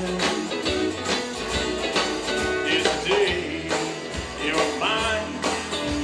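Live country-style song: a man singing with band accompaniment over a steady beat of about two strokes a second.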